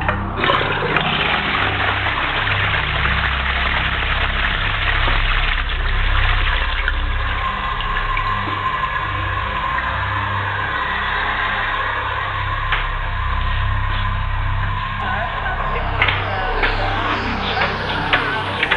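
Techno track in a breakdown. A rushing, water-like noise wash, its top end cut off, runs over a sustained deep bass. Near the end the full treble opens back up.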